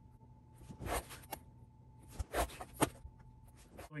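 Knife blade drawn through thin leather along a metal ruler: several short scraping cuts, spaced roughly half a second to a second apart.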